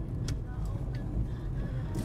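Car interior road noise while driving over a broken concrete-slab road: a steady low rumble with scattered knocks and rattles from the rough surface.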